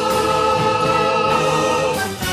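Voices in a song holding one long note with a gentle vibrato over the accompaniment; the note ends just before the close.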